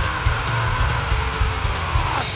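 Heavy metal band playing live: an electric guitar holds one high sustained note over drums.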